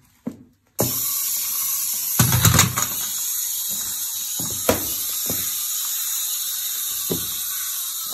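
Hard plastic toy cracking and snapping under a high-heeled shoe: a cluster of loud cracks a little over two seconds in, then single sharp snaps near the middle and again near the end. Underneath runs a steady, buzzing, drill-like hiss that starts abruptly about a second in.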